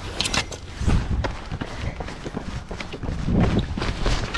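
Footsteps on a concrete walkway, irregular short knocks, over a low rumble of wind on the microphone.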